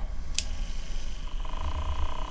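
Small electric motor of a handheld coil-whisk frother spinning its wire whisk in the air, a steady whine that swells again over the last part; its motor is one the owner calls very weak. A short click about half a second in.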